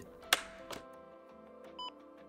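A sharp click as the lid of a Nihon Kohden Cardiolife AED-3100 defibrillator is opened, which switches it on, then a short electronic beep near the end as the unit powers up. Faint background music runs underneath.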